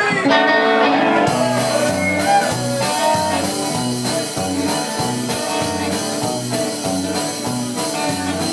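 Live rock and roll band playing with electric guitars. Guitar notes start right away, and bass and drums come in about a second in with a steady, regular beat.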